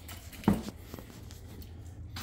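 A single sharp knock about half a second in as the DeWalt cordless portable band saw is handled, over a faint steady low hum.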